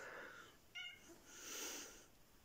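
A domestic cat giving a few short, faint meows.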